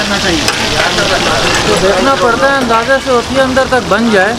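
Voices talking over the steady sizzle of fish frying in oil.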